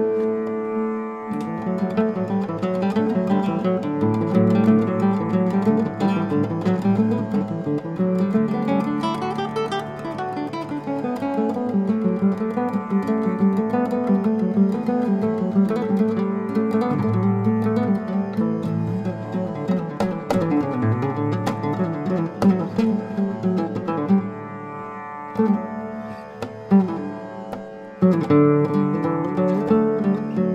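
Nylon-string classical guitar played fingerstyle: a continuous stream of picked melodic runs over sustained bass notes. It thins to a quieter, sparser passage about 24 seconds in, then fuller playing returns near the end.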